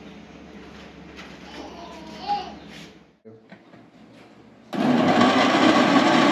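Electric countertop blender with a glass jar switched on near the end, its motor running loud and steady as it purées banana into a shake. This is the first test run of the new blender.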